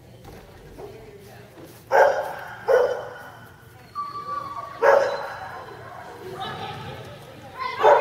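Dog barking, four sharp single barks spaced a second or more apart, each trailing off in an echoing hall.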